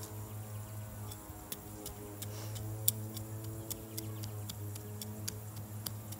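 Hand trowel chopping and scraping into wet garden soil, heard as a string of irregular sharp ticks, the sharpest about three seconds in, over a steady low hum.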